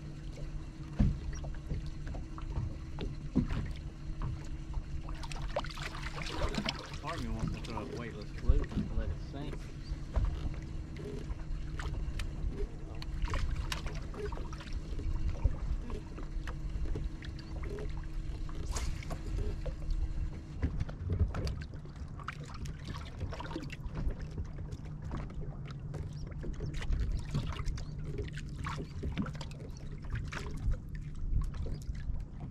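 Bow-mounted electric trolling motor humming steadily on a bass boat. The upper of its two tones drops out a little after two-thirds of the way through. Under it are wind and water noise and scattered light clicks and knocks on the deck.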